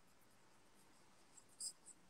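Near silence: room tone, with one short, faint click about one and a half seconds in.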